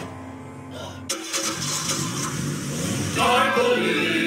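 A car engine starts with a sudden burst about a second in and keeps running. Music with singing swells in about three seconds in.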